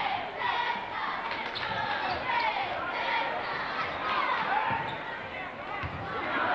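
Basketball bouncing on a hardwood gym floor amid crowd chatter in a large echoing gym, with short squeaks of sneakers on the court.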